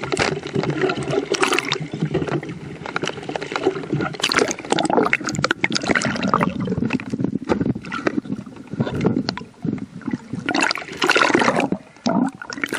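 Water splashing and bubbling around an underwater camera near the surface, in uneven surges as the diver moves through the water.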